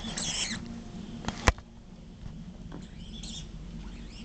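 Miniature dachshund giving high-pitched, wavering whines in two short bouts, excited during play with a ball. A sharp knock about a second and a half in is the loudest sound.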